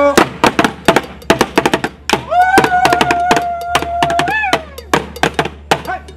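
Shoulder-carried drums beaten with curved sticks in a fast, uneven run of sharp strikes. Over the drumming, a voice rises into one long held call a couple of seconds in, lasting about two seconds.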